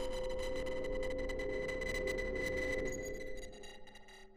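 A sustained ringing drone on one steady pitch with a crackly texture. It holds level, then fades away near the end.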